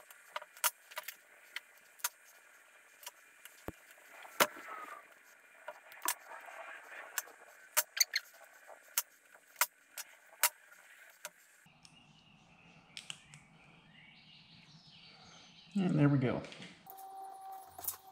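Hand wire stripper/crimper clicking and snipping on small-gauge wire, a string of sharp separate clicks as the old connector is cut off and insulated crimp terminals are pressed on, with light rattling of small parts on the bench. The clicks stop about two-thirds of the way through.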